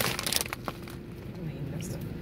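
Crinkling of a plastic potato-chip bag being handled and pulled at its top, with a couple of sharp cracks about half a second in.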